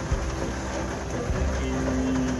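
Steady heavy rain falling on a step van, with a low rumble underneath.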